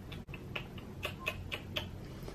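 Faint, irregular light clicks and ticks, about ten in two seconds: hands working at the face and hair while blending makeup with a beauty sponge.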